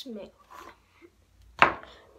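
A single sharp hand clap about three-quarters of the way through, the loudest sound here, after a brief vocal sound at the start.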